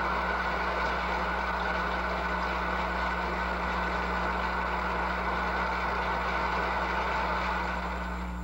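An audience applauding: dense, even clapping that holds steady and dies away just after the end, over a low steady hum from the old recording.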